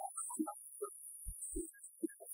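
Worship song music on acoustic guitar: sparse short notes with a couple of low thuds.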